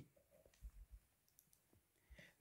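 Near silence: room tone with a few faint, brief clicks and knocks.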